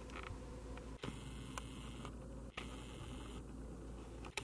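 Quiet room tone with a steady low hum. It is broken twice by about a second of high hiss, starting about a second in and again about two and a half seconds in, each onset marked by a brief dropout in the sound.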